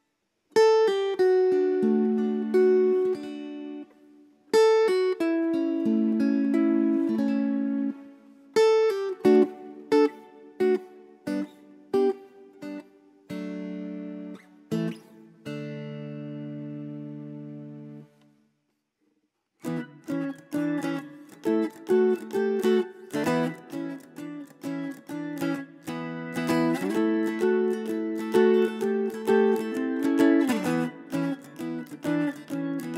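McCafferty-Seifert model mountain dulcimer being played: a slower passage of ringing plucked notes and chords, a pause of about a second and a half after the middle, then a quicker, busier passage.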